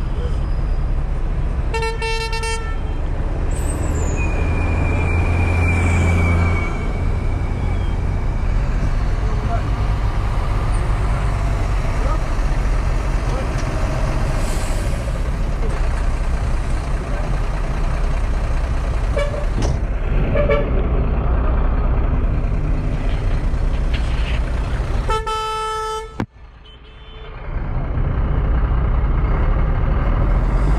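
Night street traffic heard from a vehicle window: steady engine and road rumble, with two short vehicle-horn toots, one about two seconds in and one near the end.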